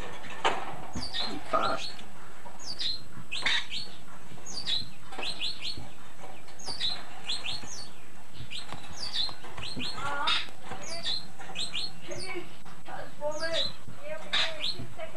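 Birds chirping: short, high chirps in quick twos and threes, repeating about once a second over a steady hiss, with a few lower calls near the end.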